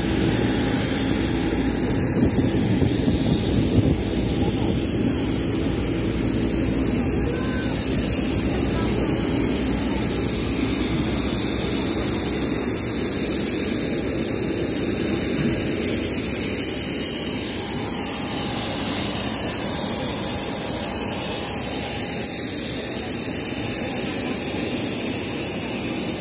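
Steady aircraft engine noise on an airport apron, a continuous roar with a high-pitched whine above it.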